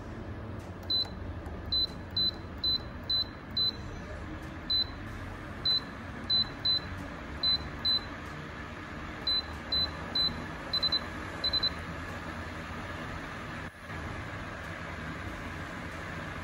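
Mistral 16-inch DC stand fan's control panel beeping once per press of the plus button, a series of short high beeps as the speed is stepped up to its maximum of 24, over the fan's steady rush of air. The beeps stop a few seconds before the end.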